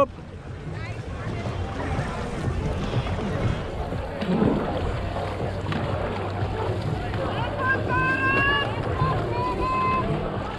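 Crew boat under way at racing pace: paddles splashing and water rushing past the hull, with wind on the microphone. A series of short, high calls sounds from about eight seconds in.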